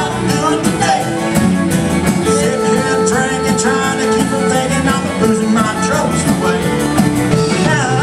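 Live country band playing, with drums keeping a steady beat under long held notes from a lead instrument.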